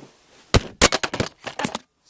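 A thrown hat hitting and covering a small handheld camcorder: a rapid series of loud knocks and scrapes on the camera body and microphone, starting about half a second in and stopping just before the end.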